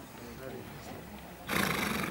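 A horse snorting: one short, loud blow of breath through the nostrils, about half a second long, near the end.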